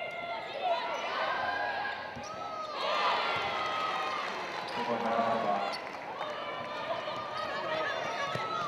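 Live court sound of a basketball game: a ball being dribbled on the hardwood, with players and spectators calling out throughout.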